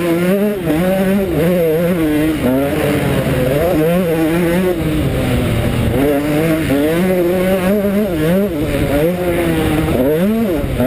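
KTM 125 SX two-stroke motocross engine revving hard under a riding load, its pitch climbing and dropping over and over as the throttle is opened and shut.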